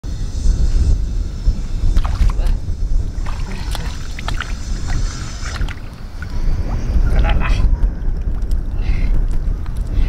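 Wind buffeting the microphone in a steady low rumble, with wet splashes and squelches as hands dig through shallow water and soft tidal mud around a buried bamboo trap tube.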